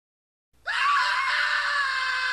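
A person screaming: after about half a second of silence, one long, loud scream that jumps up in pitch as it starts, then is held with a slowly falling pitch.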